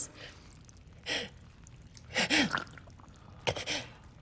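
Three ragged, pained gasps for breath from an injured woman, about a second apart; the second carries a short falling moan.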